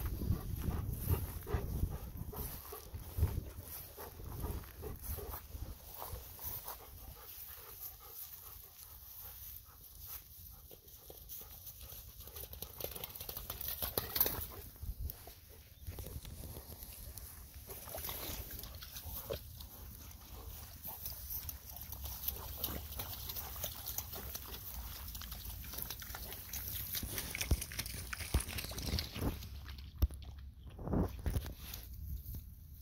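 Golden retrievers sniffing and nosing through grass close by, with irregular rustling and light steps over a steady low rumble.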